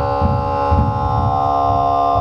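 Throat singing (khoomei) into a microphone: a loud, steady droning voice with a held overtone whistle ringing above it, over a rough low pulsing rumble.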